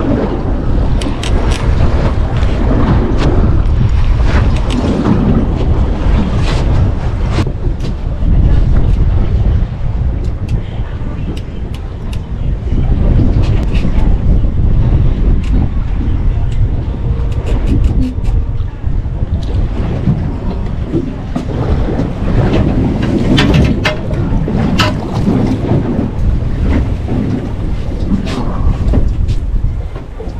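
Heavy wind buffeting the microphone over the wash of the sea against a small boat, with scattered sharp clicks and knocks throughout.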